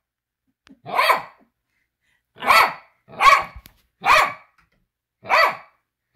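A pet dog barking five times, single short barks roughly a second apart.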